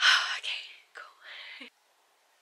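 A woman's excited, whispered exclamations: a loud burst at the start, then a few shorter ones, cutting off suddenly shortly before the end.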